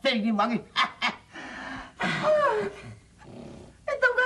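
Loud, theatrical vocalising: a man's wavering shout in the first half-second and two short sharp bursts, then a long falling cry about two seconds in.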